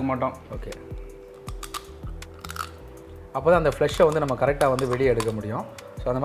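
A man's voice with a pause of a couple of seconds in the middle. The pause holds a steady background music chord and a few faint clicks of a cooked crab's shell being broken by hand.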